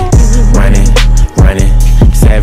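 Hip hop music: a trap beat with deep 808 bass and regular drum hits, with a brief drop in the beat a little past the middle.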